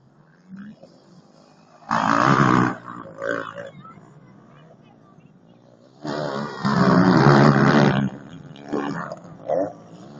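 Motocross motorcycle engines revving hard as bikes pass close by, in two loud bursts: a short one about two seconds in and a longer one from about six to eight seconds in, with fainter engine sound between.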